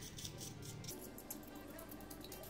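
Quiet background music, with the soft, quick, repeated scratching of a toothbrush's bristles scrubbed over the inside of an opened laptop to loosen dust.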